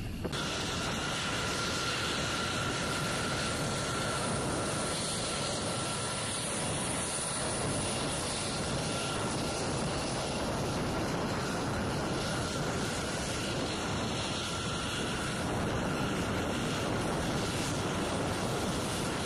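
Jet fighter engine noise from a taxiing F-16: a steady rush with a high whine that holds for most of the stretch as the jet comes closer.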